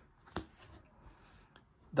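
Sleeved trading cards being handled on a playmat: a single sharp click about a third of a second in and a fainter tick about a second and a half in, otherwise nearly quiet.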